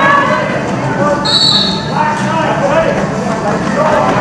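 Referee's whistle blown once, a shrill high tone of under a second starting about a second in, over shouting voices from skaters and spectators.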